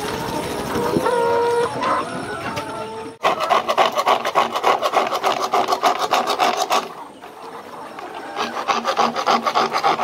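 A hand tool rasps rapidly back and forth on PVC pipe, at about eight to ten strokes a second, in two runs separated by a pause of about a second and a half.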